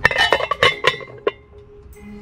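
Chrome hubcap clinking with a metallic ring as it is handled and seated on a steel wheel: a quick run of clinks in the first second, then a last one about a second and a quarter in.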